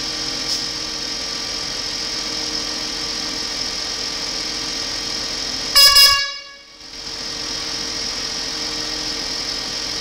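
A 2001 Mercedes-Benz CLK320's 3.2-litre V6 idling steadily. About six seconds in, a short, loud horn toot sounds, and then the sound drops away for a moment before the idle returns.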